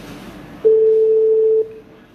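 Telephone ringback tone over a phone line: one steady mid-pitched tone about a second long, then it stops.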